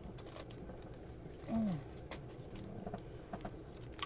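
Quiet room tone with a few faint clicks. About a second and a half in comes a single short, low hum from a woman's voice, falling in pitch.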